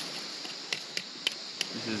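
A knife tapping and cutting into a fish's coal-charred skin on a driftwood log: four sharp clicks about a third of a second apart, starting under a second in, over a steady background hiss.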